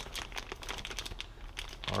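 Clear plastic bags holding cable adapters crinkling and rustling as they are handled, a busy run of small crackles. A voice begins right at the end.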